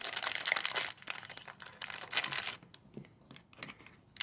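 Clear plastic packet of disposable makeup applicators crinkling as it is opened and handled, a dense crackle for about two and a half seconds, then only a few light clicks.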